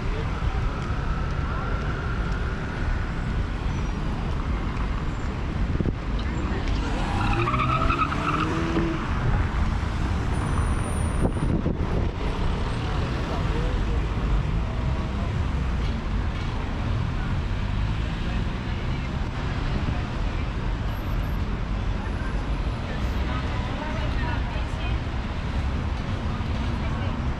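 Steady city traffic noise: cars and taxis driving past on a cobbled road, with a low rumble throughout. Passers-by's voices mix in, one standing out briefly about seven to nine seconds in.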